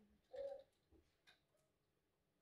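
Near silence: room tone, with one faint, short tone about half a second in.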